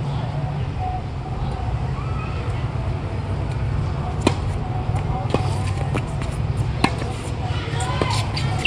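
Tennis balls struck by rackets: a serve about four seconds in, then two more shots in the rally, three sharp pops in all. A steady low rumble runs underneath.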